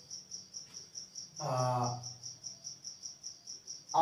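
A cricket chirping steadily, a high-pitched pulse about four times a second. About a second and a half in comes a short wordless vocal sound from a man.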